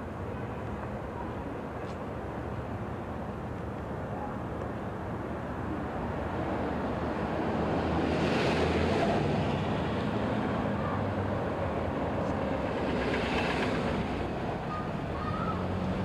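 Street traffic noise: a steady rush of passing vehicles that swells twice, about eight and thirteen seconds in, as cars go by.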